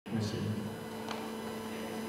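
Steady electrical hum from a stage sound system at rest, held on two low tones, with faint room noise.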